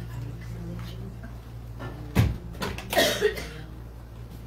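A sharp knock a little over two seconds in, then a short burst of noise about a second later, over a steady low hum.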